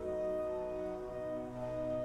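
Church organ playing a slow prelude in sustained chords. A fuller chord enters at the start, and the lower notes step down about halfway through.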